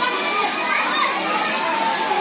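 Children playing in a swimming pool: many voices calling and chattering over one another.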